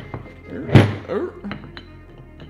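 A brake caliper set down on a metal-topped workbench with a single thunk about three quarters of a second in, over background music.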